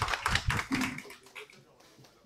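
A small group of people applauding in scattered claps, dying away about a second in.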